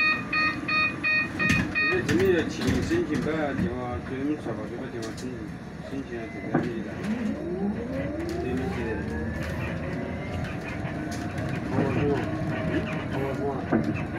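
A city bus's door warning beeper sounding a quick run of beeps, about two or three a second, for the first two seconds. The electric bus then pulls away from the stop, its drive motor whining and rising in pitch, with passengers talking.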